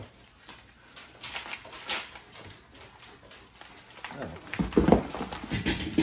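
Paper packaging crinkling as it is handled, then about four and a half seconds in a pet scrambling and thudding as it tries to jump onto a chair and the sheet on it slides off.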